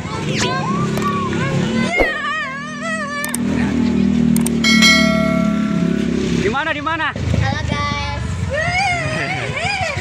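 Children's voices calling out over the steady drone of a running vehicle engine. There is a single sharp crack about two seconds in and a brief high steady tone about five seconds in.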